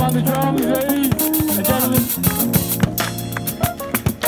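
Live fusion band jamming: a drum kit keeps a steady beat under keyboard and electric guitar lines, with some notes bending in pitch.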